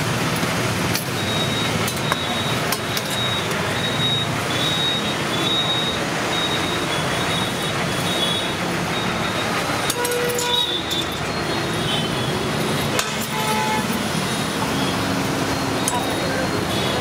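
Busy roadside ambience: steady traffic noise with people talking in the background, scattered clinks and a brief horn-like tone about ten seconds in.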